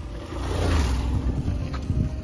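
Wind noise on the phone's microphone: a rushing sound with a deep rumble that swells and fades over about a second and a half.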